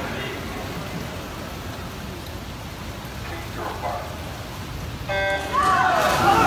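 Low crowd murmur in a natatorium. About five seconds in, the electronic race-start signal sounds one short, steady beep, and the crowd at once breaks into shouting and cheering as the swimmers dive.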